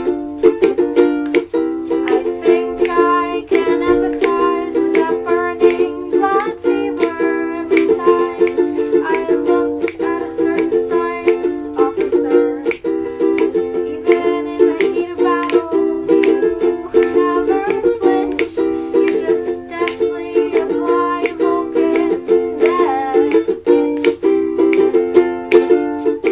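Ukulele strummed in a steady rhythm, with a woman singing the melody over it.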